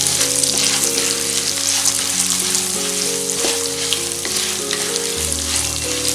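Peanuts, chana dal, cashews and curry leaves frying in hot oil in a kadai, sizzling steadily while a wooden spatula stirs and scrapes through them. Soft background music with held notes plays underneath.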